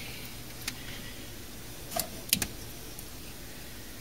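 Light clicks and taps of hands opening a 3D printer's enclosure and lifting a plastic print off the build plate: a single soft click under a second in, then a quick cluster of sharper clicks around two seconds in. A faint steady hum runs underneath.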